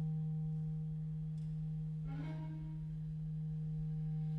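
Clarinet in B♭ holding one long low note, a steady, pure-sounding tone, with a faint short sound entering about two seconds in.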